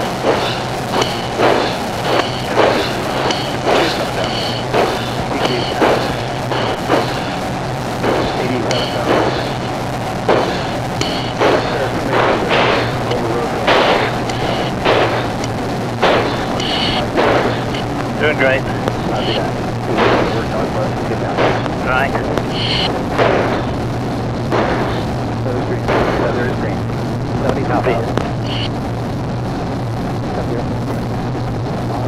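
A pilot breathing hard and rhythmically into an oxygen-mask microphone under about five g of re-entry load, a little more than one breath a second, over a steady low cabin hum.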